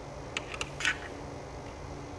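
A few light clicks and a short scrape from a tool working at the screws in an HP laptop's plastic base, all within about the first second.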